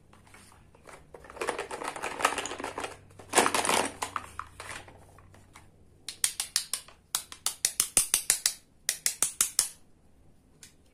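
Plastic toy food and utensils being handled, with two spells of dense rustling and clattering, then a fast run of light sharp taps, several a second, from a plastic toy knife tapping against a toy tomato and a toy cutting board.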